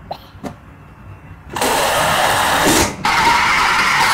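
Air rushing out of the neck of an inflated rubber balloon as it is let down, in two long bursts of about a second and a half each, the first starting about a second and a half in, the second carrying a steady whistling tone.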